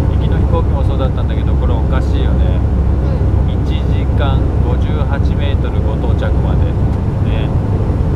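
Airliner cabin noise: a steady low rumble from the plane's engines and air system, with voices talking in the background.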